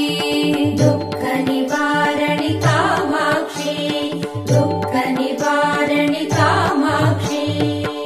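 Music from a Tamil devotional song to Goddess Durga: a melody over a steady drone, with a repeating low drum beat.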